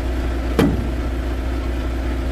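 Diesel truck engine idling steadily, with a single sharp click about half a second in.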